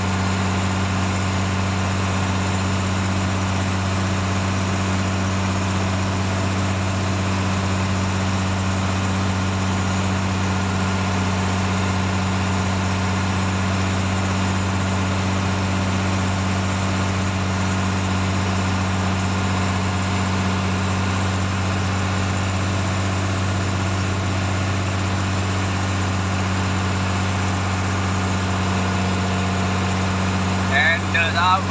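A purse-seine fishing boat's engine running steadily while under way, with an even low drone that does not change.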